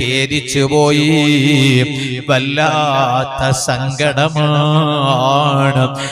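A man's voice chanting in a drawn-out, melodic style, the pitch gliding and holding on long notes.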